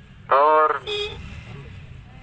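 A man's voice through a microphone holds one drawn-out word, followed about a second in by a brief high-pitched tone, over a low background rumble.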